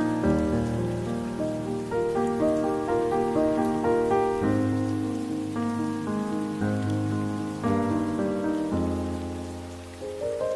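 Slow, soft instrumental music of sustained chords and deep bass notes, a new chord struck about once a second, mixed over a steady fall of rain.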